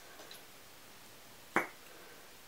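A single sharp click about one and a half seconds in, made by hands unwrapping a lip liner pencil from its packaging; otherwise a quiet room.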